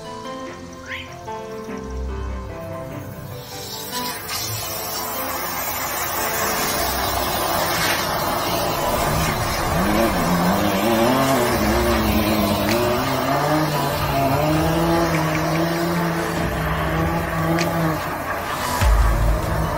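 Background music over the steady rushing noise of a high-pressure sewer jetter in use, its hose working in the drain line. The noise builds over the first several seconds and then holds. A low steady drone and wavering pitched tones come in about halfway through.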